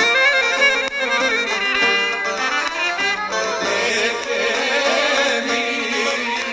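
Greek folk band playing live: the clarinet leads with a heavily ornamented melody over the band. About three seconds in the sound fills out and a man starts singing.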